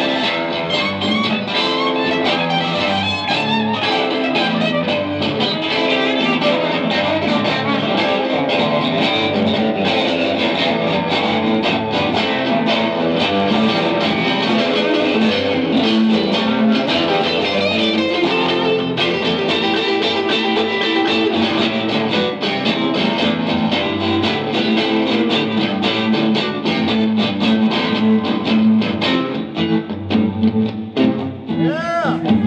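Two guitars played together in a live instrumental duet, one an electric guitar, with quick picked melodic lines weaving over strummed and plucked chords.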